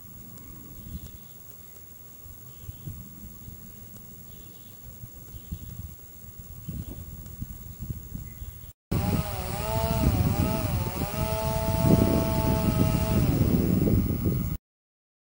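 Low rumbling outdoor noise for the first nine seconds or so. Then, after a brief break, a much louder small motor starts running, its pitch wavering at first and then holding steady.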